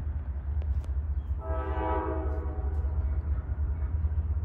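Nathan K5LA five-chime air horn on a CSX GE CW44AH freight locomotive sounding one blast of about a second and a half, starting about a second and a half in, over a steady low rumble.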